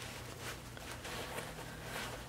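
Faint clicks and rustling from a jacket's metal zipper and its fabric being worked by hand as the zipper will not catch to zip back up.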